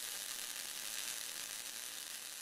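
Crackling, sizzling tail of an animated logo's sound effect, a fine hiss that slowly fades.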